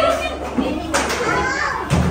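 Overlapping voices of adults and children talking and calling out, with a sharp tap about a second in.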